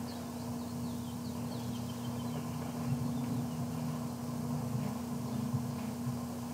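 A steady low hum with a constant pitch, with a few faint, short high chirps in the first half.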